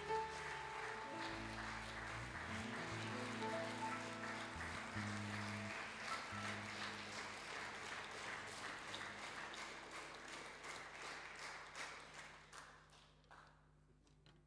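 Audience applauding while soft sustained keyboard chords play on; the clapping thins out and dies away near the end.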